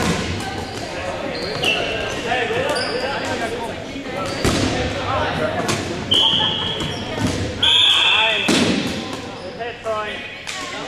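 Dodgeball play in an echoing gym: balls thud and bounce on the hardwood court and off players, with players shouting throughout. Several short, high squeals cut through, the loudest and longest about eight seconds in.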